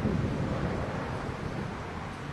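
Wind blowing on a handheld microphone outdoors: a steady, uneven noise with no other clear sound.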